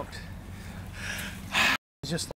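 A short, sharp breath from a man just out of cold winter sea water, after a softer breath about a second in. The sound then cuts off abruptly to silence.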